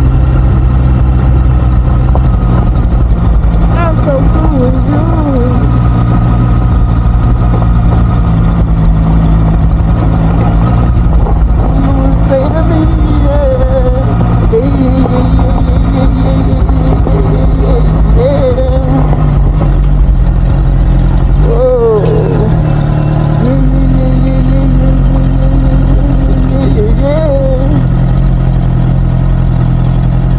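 Honda CBR650R inline-four motorcycle engine running at low, steady revs while riding slowly, its note briefly changing about two-thirds of the way in. A faint wavering voice-like sound comes and goes over the engine.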